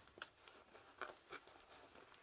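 Near silence with a few faint, short ticks and rustles from hands handling a diamond-painting canvas and its plastic cover sheet.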